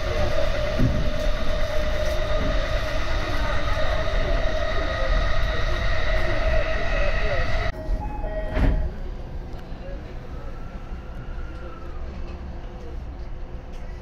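Electric commuter train running, heard from inside the passenger car: a steady rumble of wheels on rail with a steady whine over it. About eight seconds in, this gives way to the much quieter hum of a station platform, with one sharp knock just after.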